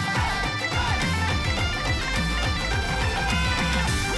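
Bagpipes playing a melody over a steady drone, with a bass-heavy beat underneath: Celtic-Punjabi folk music with a bhangra feel.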